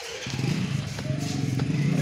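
An engine running with a steady low rumble that starts just after the beginning and grows louder, with a single click about a second in.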